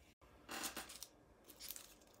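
Paper food wrapping rustling and crinkling, in two short spells about a second apart, as fries are picked out of a paper bag on a paper burger wrapper.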